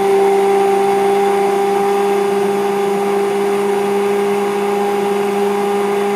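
Stick blender running at a steady speed with its head submerged in thickening liquid-soap batter: a constant, even motor hum with the blade churning the mixture as it is blended toward soap paste.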